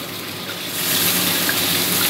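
Hot oil sizzling in a blackened iron kadhai as two large pastries deep-fry, the hiss swelling louder under a second in.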